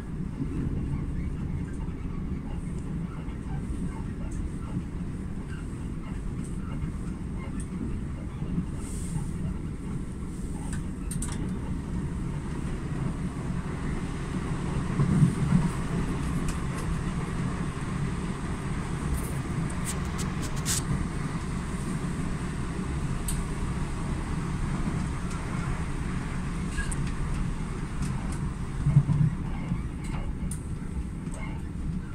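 Steady running noise inside a moving electric passenger train carriage: a continuous low rumble from the wheels on the track, with a brief louder bump about halfway through and another near the end.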